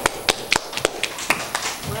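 Hands clapping in welcome: a short run of irregular, sharp claps, a few a second.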